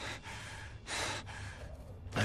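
An animated character's soft, breathy gasps, two quiet breaths about a second apart, over a faint low hum.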